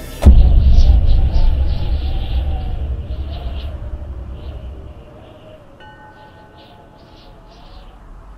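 A sudden thunderclap just after the start, its deep rumble rolling on and fading away over about five seconds, with light chiming tones ringing above it.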